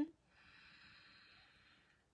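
A woman taking a slow, deep breath in during a guided yoga breathing exercise: a faint airy hiss that fades out over about a second and a half.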